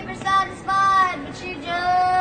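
A young boy yodeling: high held notes that flip down into a lower register between them, the last note held longest near the end.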